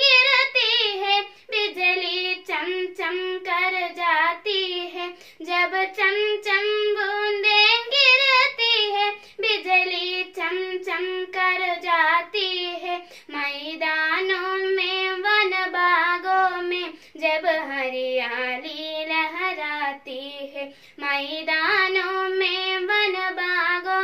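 A young girl singing a Hindi poem unaccompanied, in a steady melodic line broken into short phrases with brief breath pauses; her voice drops lower in pitch in the second half.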